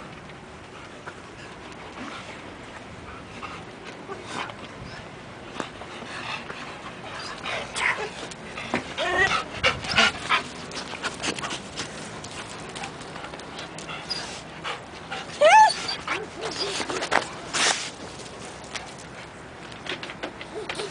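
Dogs panting and whimpering, with a few short high whines in the second half, the loudest about three quarters of the way through, amid scuffling movement.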